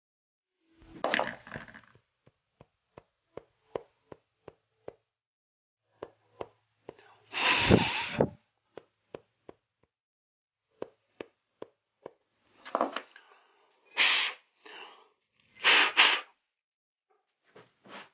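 Respirator filter pads being cleaned by hand to get the dust out: runs of sharp light taps and clicks, broken by short rushing bursts of noise, the loudest a little before halfway and near the end.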